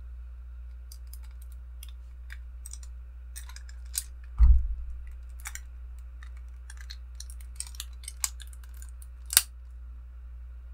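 Small clicks and taps of hard plastic and diecast armor parts as a sixth-scale Hot Toys Iron Man Mark V figure is handled and its forearm and hand are fitted, with a dull low thump about halfway through and a sharp click near the end.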